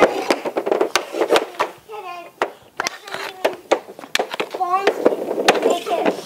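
Young children's voices mixed with many sharp clacks, two or three a second, of hockey sticks knocking on a hard garage floor.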